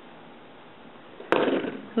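Quiet room tone, then a single sharp click about a second and a half in, followed by half a second of rustling noise.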